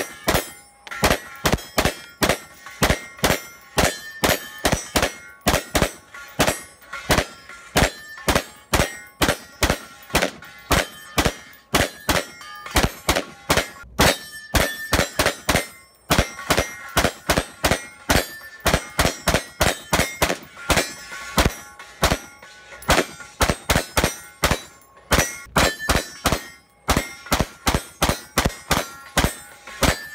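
Rapid semi-automatic fire from a Springfield Armory SAINT AR-15 rifle, each shot followed by the clang and ring of a steel popper target being hit. Shots come several a second in quick strings, with short breaks between them.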